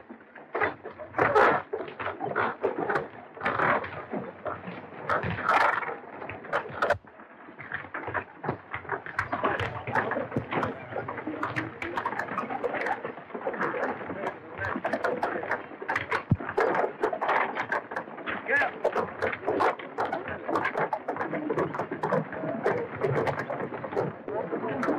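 Wagon train on the move: a dense, continuous clatter of many knocks and clicks with indistinct voices mixed in. It drops away sharply about seven seconds in, then picks up again.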